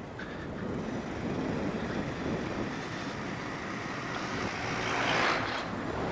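Wind and road noise from a moving motorcycle ridden on a paved road, a steady rush that swells louder about five seconds in.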